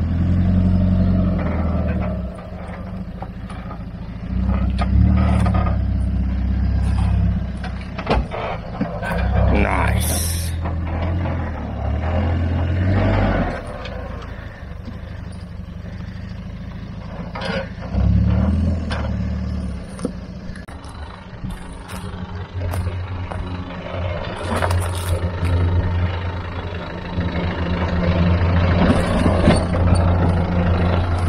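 Land Rover Discovery 1's 300Tdi turbo-diesel engine revving in repeated surges of a few seconds, dropping back between them, as the truck crawls over rock steps. A few short knocks sound among the revs.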